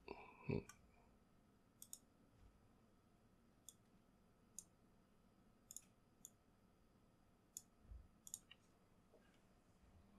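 Faint computer-mouse clicks, about ten sharp ticks spread out with pauses between them, several of them in quick pairs.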